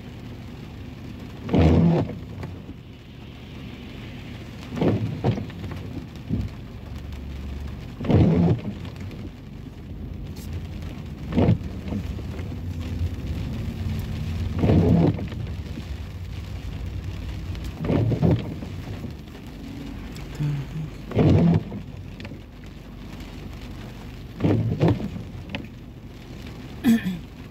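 Steady rain on a car's windshield and roof, heard from inside the cabin, with windshield wipers sweeping across the glass at an even beat of about once every three seconds.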